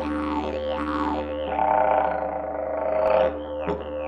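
Heartland wooden didgeridoo by Tynon played with a continuous low drone, its overtones sweeping up and down as the player's mouth shape changes. A little after three seconds in, the sound dips briefly and breaks into rhythmic pulses.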